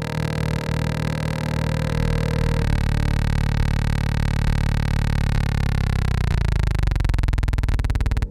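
Electronic music: a sustained synthesizer tone rich in overtones, held steady and then sliding down in pitch about six seconds in.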